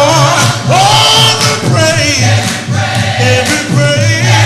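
Male gospel vocal group singing live through microphones. A lead voice holds a long note with vibrato about a second in, over a steady low bass line.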